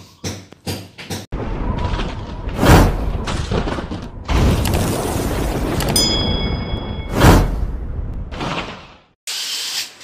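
Sound effects of an animated subscribe-button graphic, set over music: a long rushing whoosh with two loud swells and a shattering burst, and a brief chime of steady ringing tones about six seconds in.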